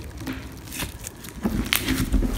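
Slime mixed with flecked EVA foam dough being stretched and kneaded by hand: quiet squishing with a few short, sharp clicks and pops.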